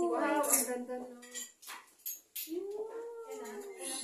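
A person's voice holding two long notes, each rising and then falling in pitch, with a short gap of talk between them.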